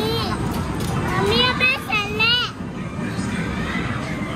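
Steady arcade din with a child's high-pitched voice calling out in two short gliding bursts, about one and two seconds in.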